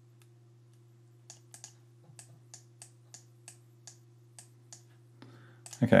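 Computer mouse button clicking about a dozen times at uneven intervals as the strokes of a signature are drawn, over a faint steady low hum.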